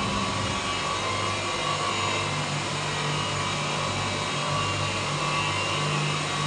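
Electric motors of a three-motor horizontal glass beveling machine running with a steady hum and a faint whine.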